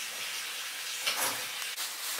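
Steady background hiss, with a faint slight swell a little after a second in.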